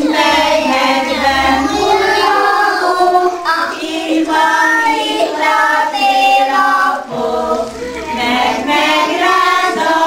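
A group of children singing a song together in unison, the voices held on long sung notes.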